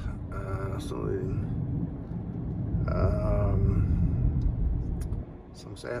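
Low, steady rumble of a car's engine and tyres heard from inside the cabin while driving, falling away sharply about five seconds in. A man's voice speaks briefly twice over it.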